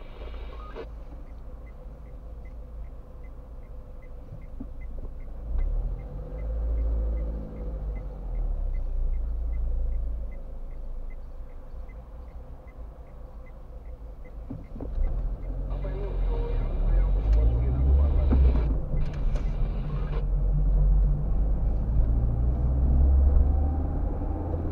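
A car's turn indicator ticking about twice a second over a low idling engine, then the engine rising in a louder rumble as the car pulls away through the turn.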